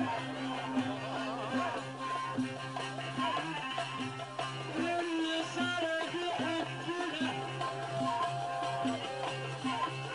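Live Egyptian folk zikr music: a violin plays a wavering, ornamented melody over a steady low drone.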